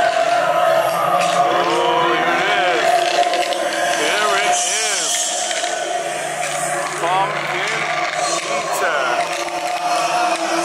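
Haunted-maze soundtrack: a steady droning tone with eerie voices gliding up and down in pitch over it, strongest a few seconds in and again near the end.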